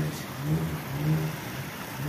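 A motor vehicle engine running, a low hum that swells and fades a little.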